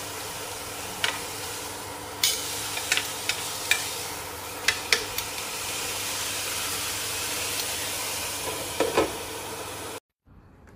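Steady sizzling hiss of food frying in a pot, with a utensil clinking against the pot about ten times as it is stirred, and a faint steady hum underneath.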